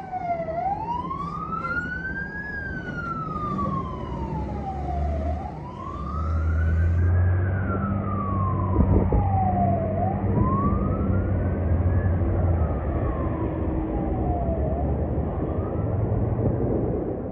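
Fire truck's wail siren rising and falling slowly, about one cycle every five seconds, over the truck's engine as it pulls away. The siren grows fainter near the end.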